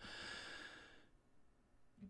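A man's soft breath out, a sigh into the microphone, lasting about a second and fading into near silence.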